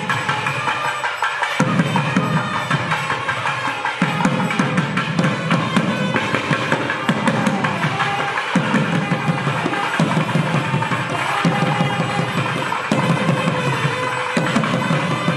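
South Indian temple music: a thavil drum beating dense rhythms under a sustained nadaswaram melody.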